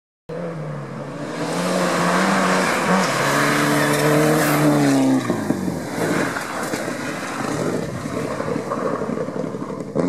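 Rally car engine at high revs approaching on a dirt road. Its pitch climbs, with a gear shift about three seconds in. The car passes about five seconds in with a sudden drop in pitch, then a rougher mix of engine and tyres on the loose surface.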